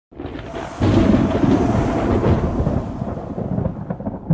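Thunder rolling: a deep rumble that swells about a second in and slowly fades toward the end.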